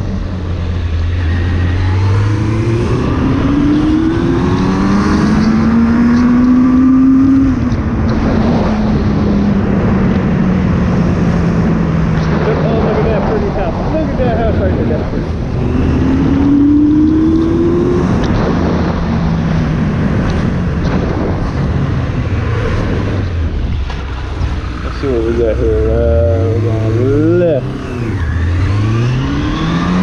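Suzuki Bandit 600's inline-four engine pulling up through the revs and easing off again as the motorcycle rides along, with wind noise on the microphone. Pitch climbs a few seconds in, sinks slowly, climbs again around the middle, and rises in several quick pulls near the end.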